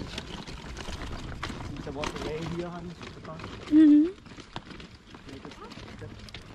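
People's voices: quiet, indistinct talk, then one short, loud vocal cry that rises in pitch at its end, about two-thirds of the way in.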